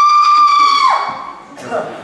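A woman's loud, high-pitched vocal cry into a microphone: it swoops up into one held note of about a second, then slides down and fades. It is a deliberately off-putting throat sound, put on for comic effect.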